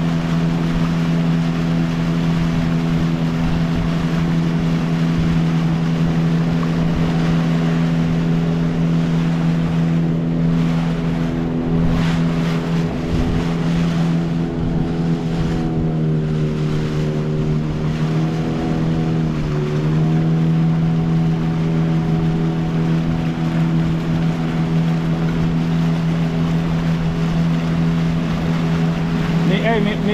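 Outboard motor driving a dugout canoe at speed, a steady engine drone over the rush of water and wind. About two-thirds of the way through the engine note sags briefly, then picks back up.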